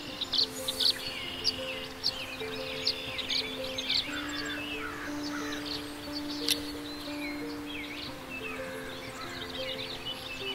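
Many wild birds chirping and singing in a dawn chorus, over slow background music of soft, sustained keyboard notes.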